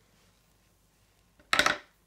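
Faint room tone with one short, loud clatter of a hard object about one and a half seconds in.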